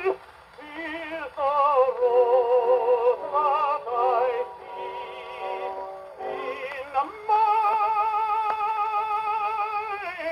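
A tenor singing with strong vibrato from a 78 rpm shellac record played acoustically on an HMV 102 portable wind-up gramophone. The phrases rise and fall, then settle into one long held note for the last few seconds.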